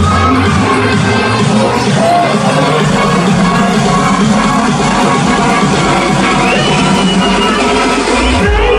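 Loud electronic dance music from a club DJ set. The deep bass drops out about half a second in, leaving the upper layers of the track playing.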